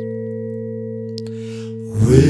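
A steady musical drone of a few held pitches, fading only slightly, with a faint tick a little past the middle.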